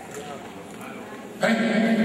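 A man's voice over a microphone and loudspeakers in a large hall. It is low for the first second and a half, then becomes a sudden loud, drawn-out vocal sound.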